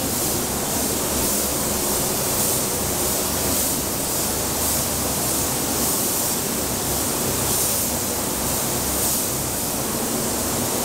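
Air-fed paint spray gun hissing steadily as primer is sprayed onto car body panels.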